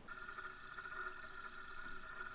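Milling machine spindle running while its drill bit bores into an aluminium block: a faint, steady whine made of several tones.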